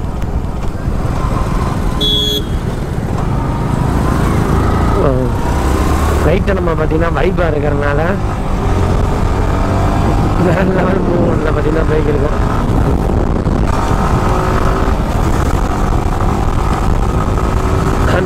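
Sport motorcycle ridden at speed on an open road: steady engine note under heavy wind rush on the microphone, the engine pitch shifting as the bike speeds up. A brief high tone sounds about two seconds in.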